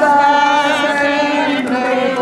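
A group of people singing a devotional hymn in unison, holding long, wavering notes.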